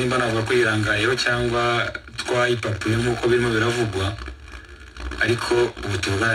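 Speech only: one voice talking, with a short pause about four seconds in.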